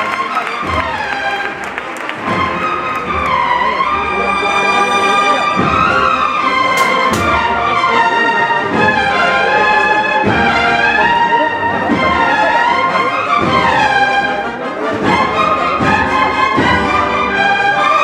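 Brass band with drums playing a slow processional march behind a Holy Week float. Brass melody lines rise and fall over a steady, regular drum beat.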